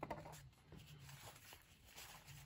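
Near silence, with faint soft rustles and ticks of cardboard trading cards being slid and flipped through by hand.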